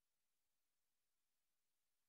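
Near silence: only a very faint steady hiss.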